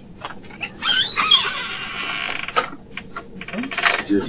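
A door handle being tried against a locked door, with a creaking, wavering squeak from about a second in, a few knocks, and a fast rattle near the end.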